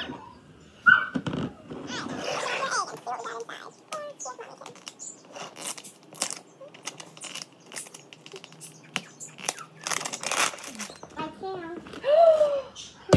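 Plastic wrapping on a giant plastic toy egg crinkling in quick, irregular crackles as hands work it off the egg.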